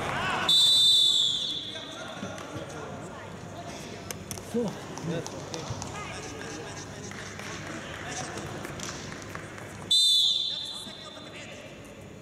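Wrestling referee's whistle blown twice, each a sharp, loud blast of about a second. The first comes about half a second in and stops the action after a scoring takedown. The second comes near the end and restarts the bout. Scattered shouts and short knocks in between.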